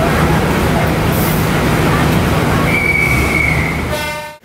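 Train noise heard inside a passenger carriage: a steady low rumble, with a brief high squeal about three seconds in.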